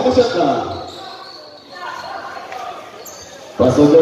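A commentator's voice over a live basketball game, breaking off about a second in and picking up again near the end. In the quieter gap a basketball is dribbled on the hard court.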